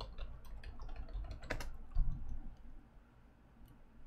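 Typing on a computer keyboard, a run of scattered key clicks, with one dull thump about halfway through.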